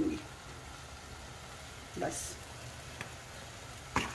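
Chopped tomatoes in oil sizzling steadily in a frying pan on a gas flame while the pizza sauce cooks.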